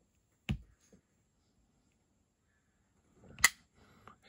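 QSP Hedgehog slipjoint pocketknife being worked by hand: a soft click about half a second in, then near the end a sharp, louder snap as the blade is opened and the back spring drives it against its stop pin, a solid lockup with no blade play.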